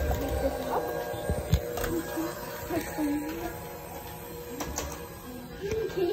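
Electric hand mixer running with its beaters in a steel bowl of cake batter: a steady motor whine that eases off in level through the middle and picks up again near the end.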